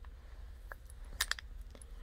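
Quiet room tone with a low steady hum, broken by a quick cluster of three light clicks a little past a second in.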